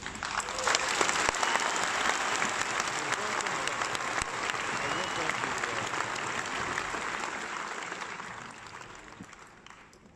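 Large concert-hall audience applauding. It swells quickly at the start, holds steady, and dies away over the last couple of seconds.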